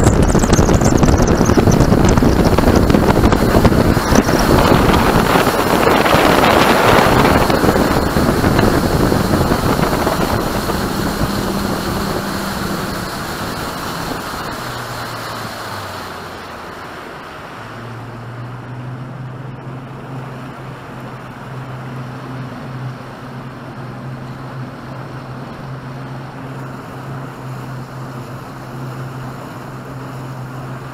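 Bass boat's outboard motor running at speed, with heavy wind and water rush, then throttled back about halfway through. The rushing noise fades, and the engine note drops and settles into a steady lower tone.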